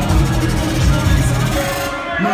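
Loud hip-hop beat played over a sound system, with heavy deep bass; near the end a hiss builds in the high end.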